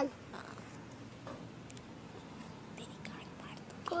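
A pause in a young child's chatter: low room noise with a few faint short sounds, the child's voice trailing off at the very start and starting again near the end.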